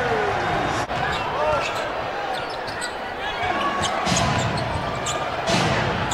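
Basketball arena game sound: a basketball being dribbled on the hardwood court and sneakers squeaking, over a steady crowd murmur.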